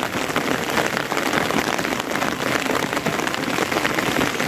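Steady rain falling, a dense patter of drops.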